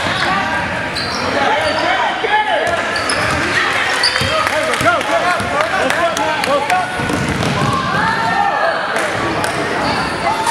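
Basketball game in a large gymnasium: a basketball bouncing on the wooden court, with short knocks scattered through, amid many overlapping voices of players and spectators calling out.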